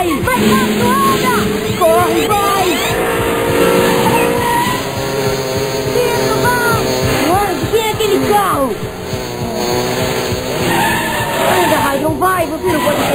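Mini 4WD toy race cars running on a plastic track, heard as a racing-car sound effect with tyre squeals. Voices shout over it and music plays underneath.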